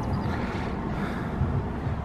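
Steady low outdoor rumble: wind buffeting the microphone, mixed with distant street traffic.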